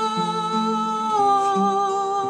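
A woman singing a long held note that steps down slightly about halfway, over an acoustic guitar picking changing bass notes.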